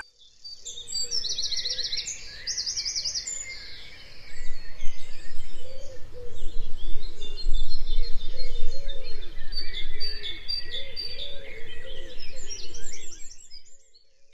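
A chorus of birds chirping and singing, many calls overlapping, with quick trilled phrases repeating in the first few seconds. Lower arched notes repeat underneath from about five seconds in. The chorus stops just before the end.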